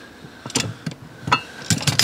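Steel wheel brace and jack tools being handled in a car's spare-wheel well: several short metallic clinks and knocks, spaced irregularly, as the brace knocks against the jack and the steel spare wheel.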